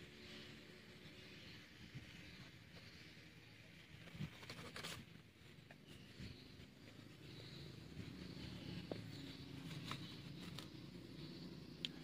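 Fingers working and pressing loose compost-and-soil mix into a plastic pot around a bonsai's roots: faint rustling and scraping, with a few sharper scratches about four to five seconds in.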